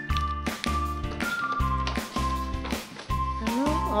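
Background music with a steady beat, a repeating bass line and melody notes over it.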